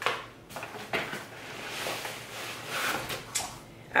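A cardboard box being opened and rummaged through by hand: rustling and scraping of cardboard and paper, with a few sharp taps, one near the start, one about a second in and one near the end.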